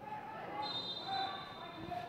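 Referee's whistle blown for a foul: a faint, steady, high whistle starting about half a second in and lasting about a second, over distant shouts on the pitch.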